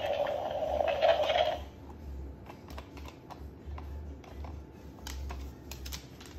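Moluccan cockatoo giving a loud, raspy call that stops about a second and a half in, followed by scattered light clicks of its claws and beak on the hardwood floor and the plush toy.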